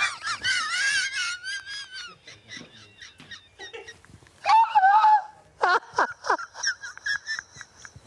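A man and a woman laughing helplessly, with high-pitched, wheezing, squealing laughs broken by breathless pauses. The loudest shriek comes about halfway through, followed by a run of short squeaks.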